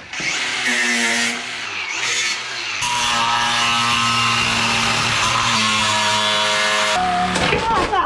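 Angle grinder with a cut-off wheel cutting through the steel of an old air compressor: a loud, steady motor whine and grinding hiss. It stops about seven seconds in.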